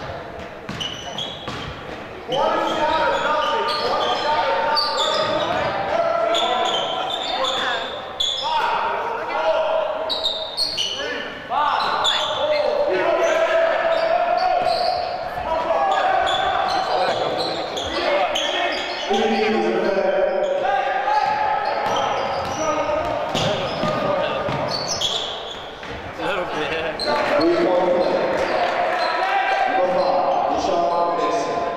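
Live basketball game sound in a reverberant gym: a ball bouncing on the hardwood court among the players' raised voices, which turn louder about two seconds in.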